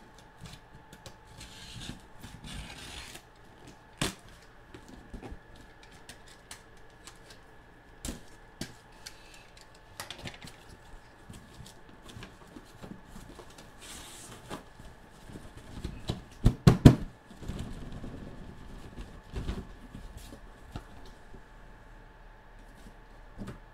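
Cardboard shipping case being opened by hand: tape cut and peeled, flaps scraped and pulled back, with scattered clicks and rustles. A quick run of loud knocks comes about 16 to 17 seconds in as the boxes inside are handled.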